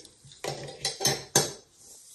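Metal bulldog clips clinking as they are set down, with about three short metallic knocks half a second apart.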